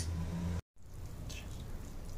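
Low steady hum with a brief dead-silent gap about a third of the way in, where the recording is cut; afterwards a quieter steady hum.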